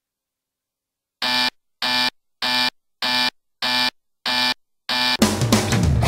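Digital alarm clock beeping: seven short beeps of a steady tone, a little over half a second apart. About five seconds in, a rock band with drum kit comes in.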